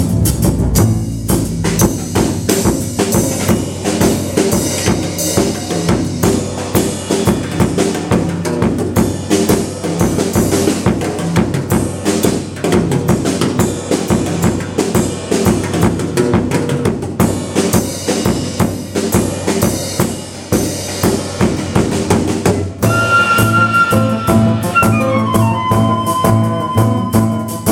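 Live jazz drum kit playing a busy passage of fast snare, cymbal and bass-drum strokes, with a low bass line underneath. Near the end a wind instrument comes in with a falling melodic line and the band plays on.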